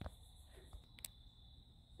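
Near silence, with crickets chirping faintly and steadily and two faint clicks, one about a second in.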